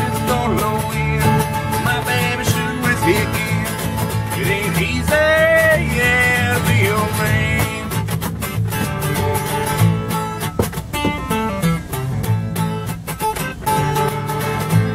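Acoustic guitar strummed and upright bass plucked together in an instrumental break of a country blues song, played live, with a bending melodic line about five seconds in.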